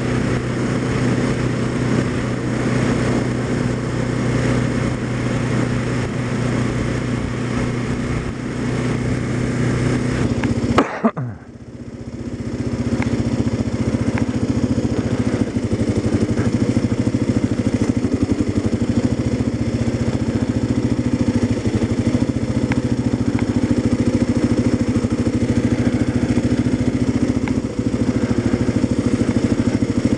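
Motorcycle engine running steadily as it is ridden, with a rushing noise over it. About eleven seconds in, the sound cuts out suddenly and comes back over about a second, then the engine runs on steadily.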